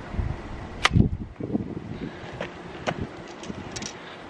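Slingshot with an arrow attachment fired about a second in: a single sharp snap as the bands are released and the arrow leaves. A few faint clicks follow later.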